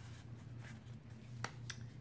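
Quiet handling of a handmade paper scrapbook album: faint rustling and a few light taps as card pages and photo mats are turned, over a steady low hum.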